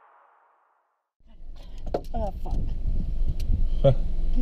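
Background music fades out, followed by a short silence. About a second in, the low rumble of a car driving, heard from inside the cabin, cuts in abruptly, with people's voices over it.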